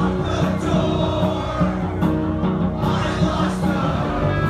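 Live rock band playing: electric bass, electric guitar and drums with repeated cymbal hits, and a male voice singing over them.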